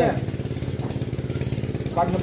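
A small engine running steadily in the background, a fast even putter with no change in speed.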